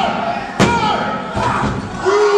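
Referee's hand slapping the wrestling ring mat during a pin count: one sharp slap about half a second in. Crowd voices shout throughout.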